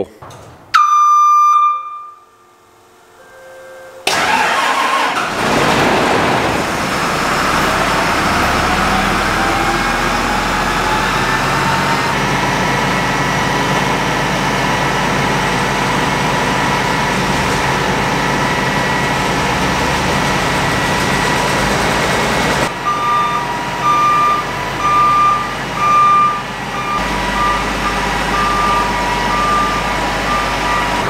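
Case IH 7120 combine starting up: a short warning beep about a second in, then the machine comes on at about four seconds with a whine that rises in pitch over several seconds as the threshing and separator drives spin up, then runs steadily. Near the end a warning beep sounds about once a second over the running machinery.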